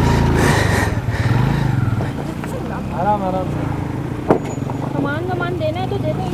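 Motorcycle engine idling, louder in the first second or two and then fading back. Voices talk in the background and there is one sharp click about four seconds in.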